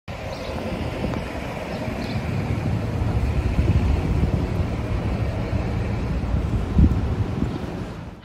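City street traffic noise, a steady low rumble of passing cars, with wind buffeting the microphone and one brief louder thump near the end.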